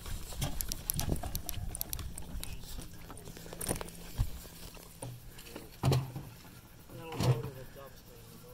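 Low voices and scattered clicks, then near the end a firework shell's lift charge fires from its tube in a consumer cake with a single loud thump.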